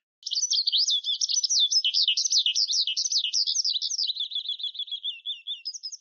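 Bird song: a fast, unbroken stream of high chirping and warbling notes that starts a moment in and grows gradually softer.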